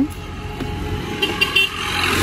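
Ola S1 Pro electric scooter pulling away from a standstill: road and wind noise growing louder as it picks up speed, with a few short high-pitched tones a little past the middle.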